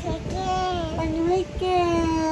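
Young child singing long, drawn-out notes: two held notes with a brief break about a second and a half in.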